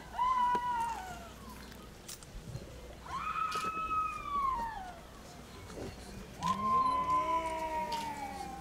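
A cat meowing three times, a few seconds apart. Each meow is a long call that rises and then falls in pitch, and the last one runs on past the end.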